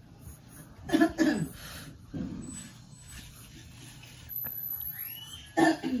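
A short cough about a second in, then a pencil scratching faintly across paper as freehand lines are drawn.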